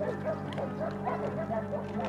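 Background music: a steady low drone with faint short higher notes over it.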